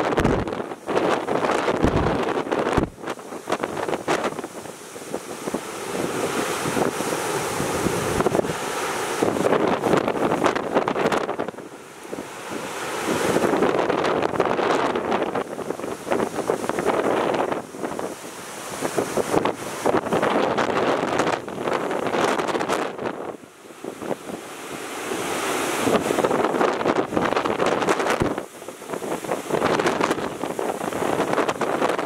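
Strong typhoon wind buffeting the microphone over heavy surf breaking against the breakwater; the noise rises and falls in gusts every few seconds.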